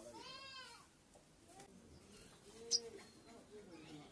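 A short animal call near the start whose pitch rises and then falls, followed by a brief, sharp, high chirp just under three seconds in.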